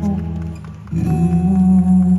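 A pop song performed live: a male singer holds long notes over the backing music, with a short dip in level about half a second in before the next held note comes in louder.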